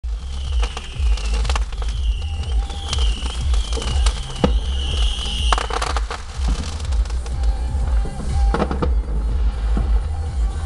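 Fireworks going off: a rapid series of pops and crackles, with a high wavering whistle for about the first five seconds, over music with a heavy bass.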